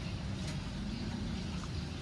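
Quiet, steady background noise with a low hum and no distinct events.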